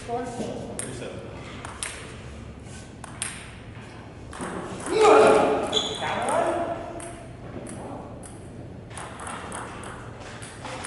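Celluloid-style table tennis ball clicking in sharp, scattered pings as it is bounced on the table and paddle in a large hall. A loud voice breaks in about five seconds in.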